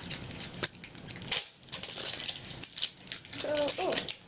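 Plastic wrapping of an L.O.L. Surprise toy ball crinkling and crackling in rapid small clicks as it is handled and peeled open.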